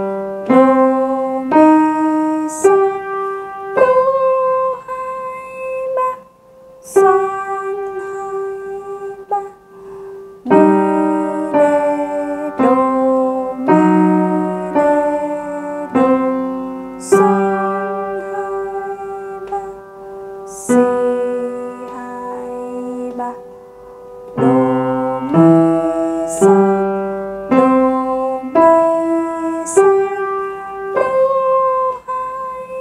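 Piano playing a slow, simple beginner piece in three-four time with both hands, single melody notes over low bass notes. Some notes are held and left to fade.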